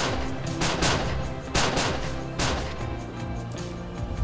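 Several hunters firing shotguns at a flock of ducks: about six blasts in quick, uneven succession over the first two and a half seconds, over background music.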